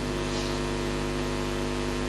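Steady hum of several even, unchanging tones stacked over a low drone.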